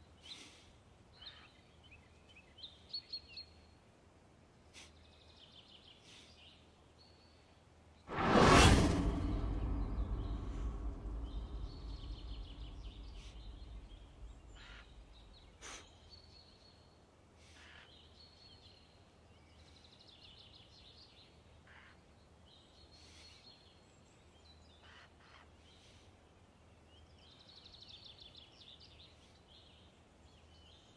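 Faint birds chirping over quiet ambience. About eight seconds in, a single loud sudden bang rings out and fades away slowly over about six seconds.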